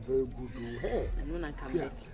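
A person's voice making drawn-out, wordless sounds that slide sharply up and down in pitch, over a low rumble.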